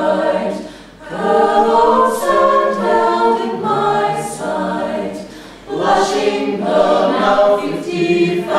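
Mixed-voice a cappella choir of sopranos, altos, tenors and bass singing in harmony, with short breaks between phrases about a second in and again between five and six seconds in.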